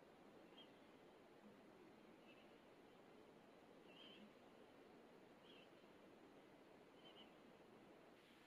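Near silence: room tone, with faint short high chirps repeating about every second and a half.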